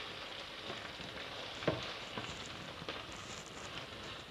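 Clear plastic packaging rustling as it is handled, with a few scattered clicks, the sharpest about halfway through.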